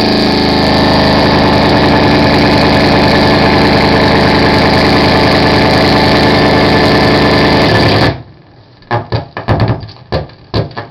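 Harsh noise music played live on electronics: a loud, dense, unchanging wall of distorted noise with a low pulsing hum underneath. It cuts off suddenly about eight seconds in and is followed by a run of sharp knocks and clicks.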